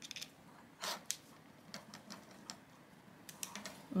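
Faint, irregular small clicks as a small screwdriver turns a pointed screw through a nylon dog collar into an ElevationLab TagVault plastic AirTag holder, tightening it.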